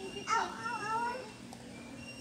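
A single high-pitched, wavering call, about a second long, starting shortly after the start.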